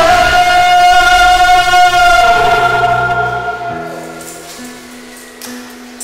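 A male voice holds one long sung note over a karaoke ballad backing track. The note ends about two seconds in, and the accompaniment fades to soft sustained chords as the song winds down.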